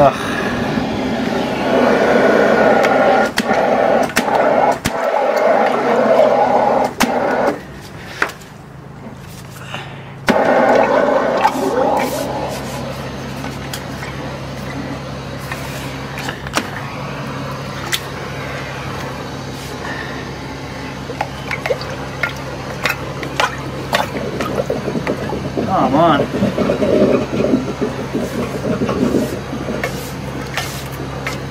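Drain jetter running with its high-pressure hose working in a blocked interceptor drain: a steady low engine hum with watery noise and scattered knocks. Indistinct voices in the first few seconds and again near the end.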